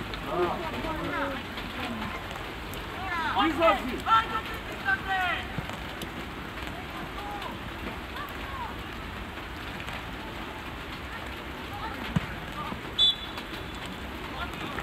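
Youth football match sound: boys' voices shouting across the pitch over a steady background hiss. A single sharp knock comes about twelve seconds in, then a short high whistle blast, the referee stopping play.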